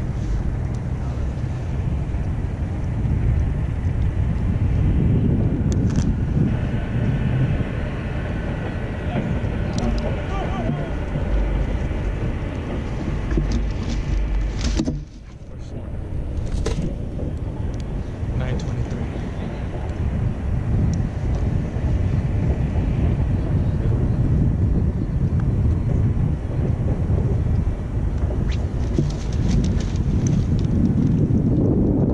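Wind rumbling on an action camera's microphone, with a few short handling knocks. The sound dips briefly about halfway through.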